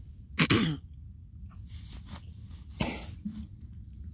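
A person coughing close to the microphone: one loud cough about half a second in, and a second, weaker cough about three seconds in.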